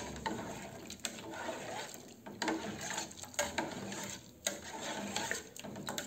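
A plastic spoon stirring water with melting coconut-soap cubes in an aluminium saucepan, scraping and knocking against the pan about once a second.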